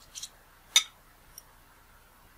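Small clicks from the metal parts of a Minolta Rokkor 58mm f/1.2 lens barrel being handled and fitted together. A soft brief rustle comes first, then one sharp click about three quarters of a second in, and a faint tick later.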